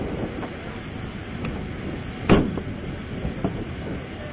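Wind buffeting the microphone in a low, steady rumble, with one sharp knock a little over two seconds in.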